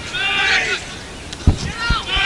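Shouted, high-pitched calls from people on a football pitch, with two dull low thumps about a second and a half in.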